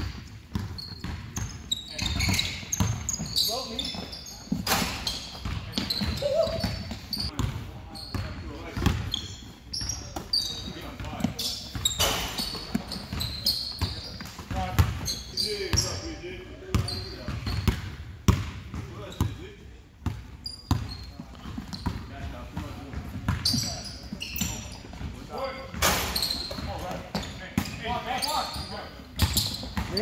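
Basketball bouncing and dribbling on a hardwood gym floor during play, a string of knocks, with short high squeaks from basketball shoes on the court and indistinct players' voices, in the echo of a large gym.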